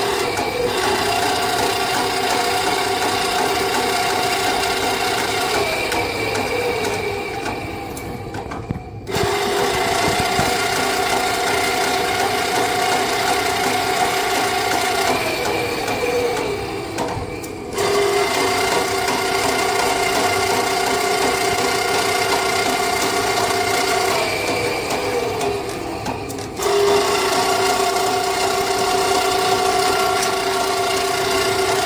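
Electric drum-type sewer snake machine running, its motor spinning the drum and cable down the sewer cleanout. The steady whine sags in pitch before each brief cut-out, then starts again sharply, three times.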